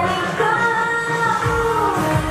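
K-pop dance song played loud over a stage sound system, with female voices singing over a drum beat.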